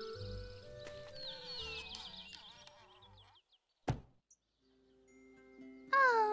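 Cartoon background music, light stepping melody notes that fade out about three seconds in. A single sharp knock follows just before four seconds in, then faint held tones come in near the end.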